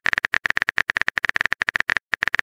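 Texting-app keyboard sound effect: a fast, uneven run of short clicks, as of a message being typed.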